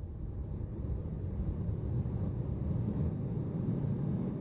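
A low, steady rumbling noise with no tune or beat, slowly growing louder.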